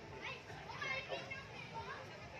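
Children's high voices and people talking among a crowd, with one child's voice loudest about a second in.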